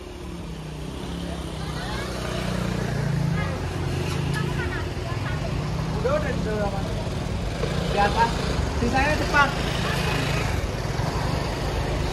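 Diesel engine of a Scania coach running close by, a steady low drone that grows louder over the first few seconds.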